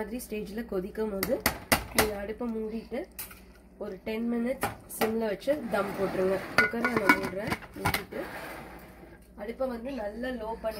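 Metal ladle stirring rice in an aluminium pressure cooker, clinking and knocking against the pot, then the cooker's lid being fitted on with a scraping rattle.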